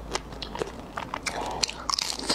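Close-miked eating sounds of raw soy-marinated tiger shrimp: wet chewing with sharp clicks, then a bite into the shrimp near the end.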